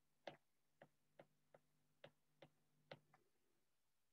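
Faint, irregular clicks of a stylus tapping a tablet's glass screen while writing by hand, about two a second.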